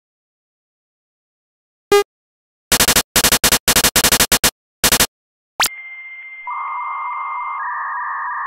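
Retro home-computer sound effects: a single short blip about two seconds in, then a run of quick keystroke clicks as a LOAD command is typed. Then a fast rising sweep and a steady data-loading tone over hiss, which steps in pitch twice.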